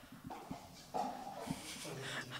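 A woman's quiet vocal sound, starting about halfway through, over faint room tone with a few small clicks.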